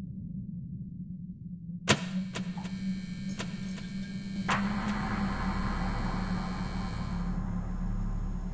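Cartoon sound effect of overhead lights switching on: a steady low hum, a sharp click about two seconds in with a few lighter clicks, then another click about four and a half seconds in and a louder electric buzz.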